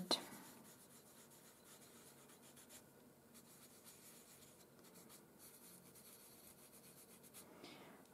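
Faint rubbing of fingertips on pastel paper, blending soft pastel pigment into the background.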